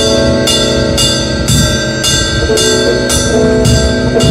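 Instrumental heavy post-rock: distorted electric guitar holding sustained chords over drums, with a ringing cymbal struck about twice a second.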